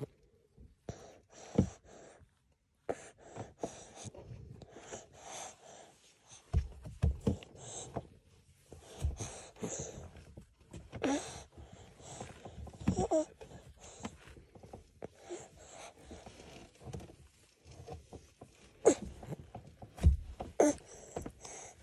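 Baby breastfeeding, with irregular soft clicks of suckling and swallowing and short breaths through the nose.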